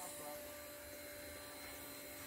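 Faint, steady background noise with a thin, constant whine running through it and no distinct event.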